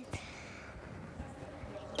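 Hollow room noise of a large sports hall, with a few faint low thumps.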